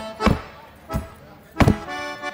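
Leather boots striking a stage floor in chula footwork, three sharp stomps about two-thirds of a second apart, over an accordion playing held notes.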